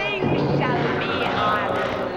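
Music with a voice singing over it, its pitch gliding up and down.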